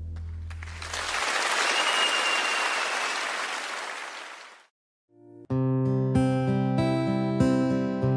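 A song ends on a held low note, then audience applause swells and fades out over about four seconds, with a brief whistle partway through. After a moment of silence a new song starts, with strummed acoustic guitar over a bass line.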